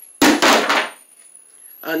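A short knock followed by a rustle of containers being handled, starting sharply about a quarter second in and lasting under a second.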